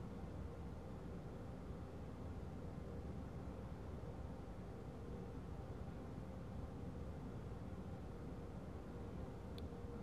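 Steady low background hiss with a faint hum and no distinct sound events: room tone. A couple of tiny clicks come near the end.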